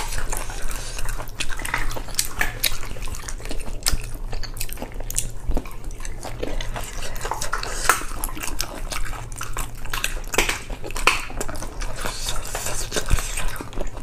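Close-miked eating of spicy-braised sea snails in chili oil: chewing and wet mouth sounds with many irregular small clicks and sticky squelches as fingers handle the shells and pull out the meat. A steady low hum runs underneath.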